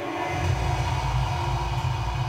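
A deep, steady rumbling drone from a horror film trailer's soundtrack, swelling in about half a second in.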